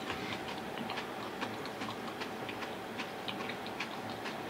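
Small, irregular mouth clicks and lip smacks, several a second, over a steady faint hum.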